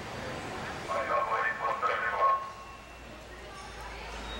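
A short call from a man over the pool's public-address system, about a second in and lasting about a second and a half, heard over steady venue noise: the starter's command to the backstrokers holding the wall before the start.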